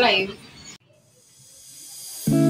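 A woman's voice ends on a falling syllable and cuts off suddenly, then a faint hiss fades in.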